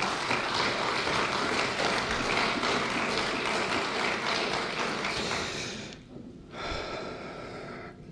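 Applause from the assembled members, a dense spread of clapping that dies away about six seconds in.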